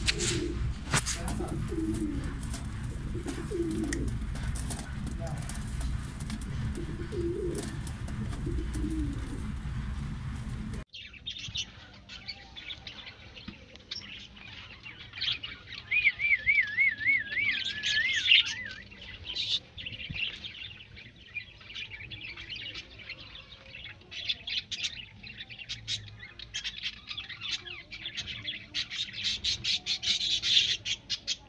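Pigeons cooing low over a heavy low rumble. Then, after a cut, dense high chirping and twittering from birds in the loft, with a wavy trilled whistle partway through.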